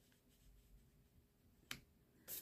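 Near silence, with one short, light click near the end from a tarot card being handled on the table.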